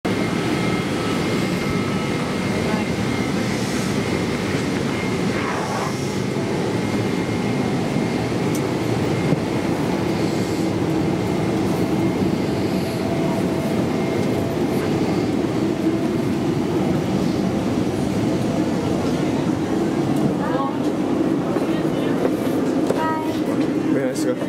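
Steady drone of a Boeing 747-8 airliner cabin, the ventilation and aircraft hum inside the fuselage, with a faint high whine through the first half. Low murmur of passengers' voices is mixed in.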